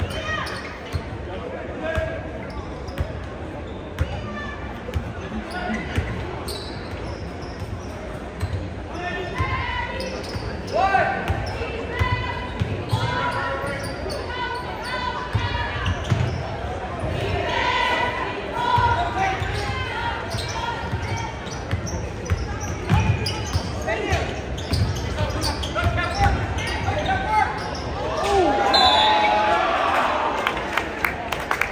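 Basketball dribbling and bouncing on a gym's hardwood floor, repeated thumps throughout, echoing in the large hall, with players' and spectators' voices calling out over it.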